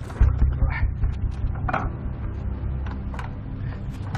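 A stalled motor scooter's kick-start lever being worked, with mechanical clicks and knocks over a steady low hum, and the engine not catching. The rider later guesses it has run out of fuel.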